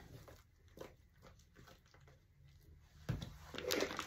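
Faint scrapes and dabs of a spatula scooping thick lightweight spackle out of a plastic tub and into a piping bag, with a louder knock about three seconds in.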